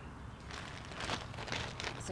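Rustling and crinkling of a plastic potting-soil bag being handled: a string of soft scrapes that starts about half a second in.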